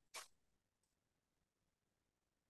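Near silence, with one brief faint noise just after the start.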